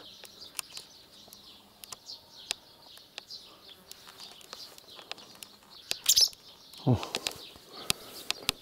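Barn swallows giving alarm calls: many short, high chirps, with a louder call about six seconds in. The calls are the birds mobbing a person close to their nest of chicks to drive him away.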